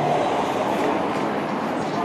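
Steady, even rumbling background noise with no distinct events.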